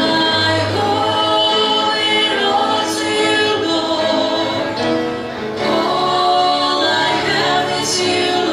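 Three women singing a gospel worship song together in harmony into handheld microphones, with musical accompaniment.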